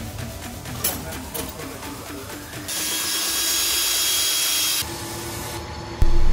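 Background music with a steady beat; about three seconds in, a power tool runs loud and steady for about two seconds, then cuts off suddenly.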